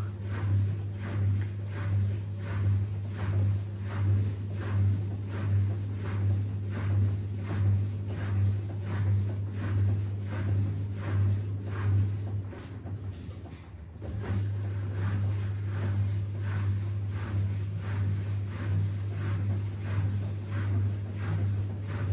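Front-loading washing machines mid-wash: a steady low hum with rhythmic swishes of water spraying and sloshing in the turning drum, about one and a half a second. The hum cuts out for a moment a little after twelve seconds, then starts again.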